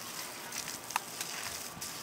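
Garden hose spray nozzle spraying water, a faint steady hiss, with a short squeak about halfway through.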